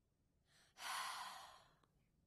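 A woman's tearful sigh: one long breath starting about half a second in and fading away over about a second.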